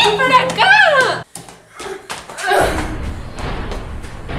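High-pitched shrieks from girls in a scuffle, rising and falling in pitch, cut off about a second in. A few sharp knocks and thuds follow, then a steady low noise sets in.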